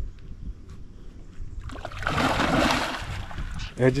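A large hooked fish thrashing at the surface during the fight: a single splash of churning water about two seconds in, lasting a second and a half.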